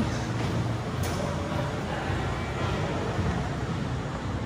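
Steady low background rumble of a noisy warehouse, with no distinct events.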